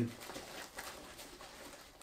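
Faint rustling and light ticks of a nylon sling bag being handled as a removable pouch panel is hooked into place.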